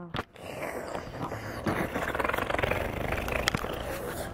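Steady scratchy rustle of camera handling noise, a hand and fingers rubbing over the camera body and microphone as it is moved around, with one sharp click about three and a half seconds in.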